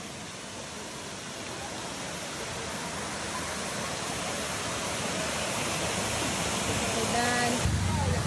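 Rushing water from a waterfall and its cascades: a steady, even hiss that grows gradually louder. A brief voice sounds near the end.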